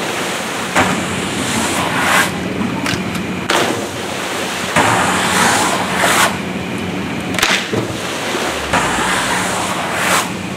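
Water splashing and churning as a jumper lands in a water-jump pool. Under it runs a steady low hum, and sharp rushes of noise come about every second and a half.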